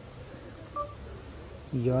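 A single short electronic beep from a smartphone a little under a second in, the kind of tone that switches on voice input, just before a man starts speaking into the phone.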